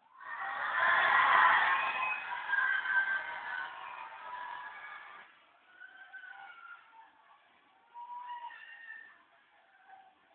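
A crowd of voices shouting and screaming, loud for about the first five seconds, then dying down to scattered high calls.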